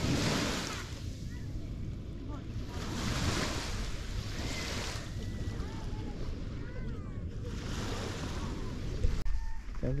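Small waves washing onto a sandy beach, swelling and fading in slow surges, with faint distant voices over them. The sound breaks off abruptly near the end.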